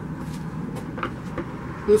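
Steady background noise with a few faint, short clicks around the middle.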